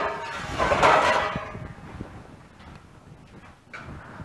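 A metal powder canister slid and set down on a steel ammunition hoist: a scraping, clanking slide with a faint metallic ring, loudest about a second in and fading away over the next second or so.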